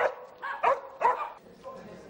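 Border collie barking, four sharp barks in about a second, then it stops.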